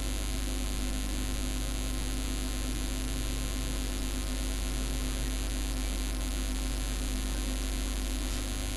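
Steady electrical mains hum with constant hiss from the recording chain, unchanging throughout.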